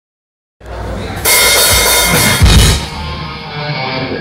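Live metal band playing on stage, led by the drum kit: after a brief silence the band comes in, a loud cymbal crash hits a little over a second in, and a heavy bass drum and cymbal hit lands near the middle before the playing drops back.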